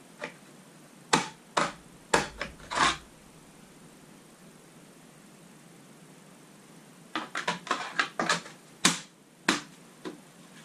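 Sharp clicks and knocks of roof rail parts being handled and set against a vehicle's hardtop. A few come in the first three seconds, then a quick run of clicks starts about seven seconds in.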